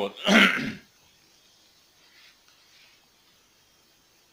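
A man clears his throat once: a short, harsh burst about half a second long, just after the start.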